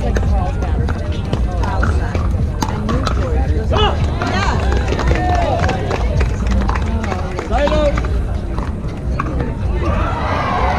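Pickleball play: scattered sharp pops of paddles hitting the plastic ball, over background voices and calls from players and spectators and a steady low rumble.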